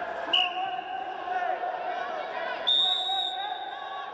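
Referee's whistle blown briefly to restart the wrestling bout, about a third of a second in. Near the end comes a longer, higher steady whistle tone, over a background of voices in the arena.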